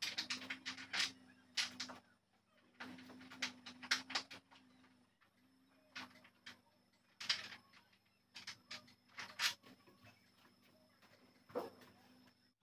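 Clicks and light knocks of hand tools and hardware against a wooden bed frame as its rails are fixed to the headboard and footboard. They come in irregular clusters, with short pauses between.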